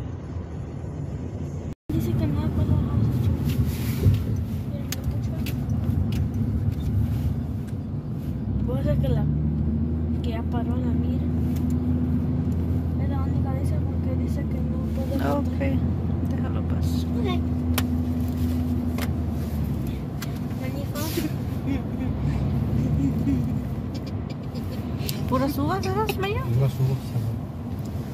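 Car-cabin road and engine noise while driving at steady speed: a low, even hum, with a brief gap in the sound about two seconds in.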